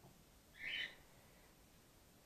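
A grey-headed flying-fox gives one short, high squeak about half a second in.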